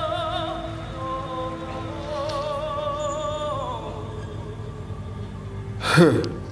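A man singing long, high held notes with wide vibrato over a soft instrumental backing, the line stepping down in pitch a little past halfway. A short, loud laugh near the end.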